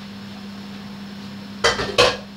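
Cookware clattering: two sharp knocks of a spoon against a pan or bowl near the end, over a steady low hum.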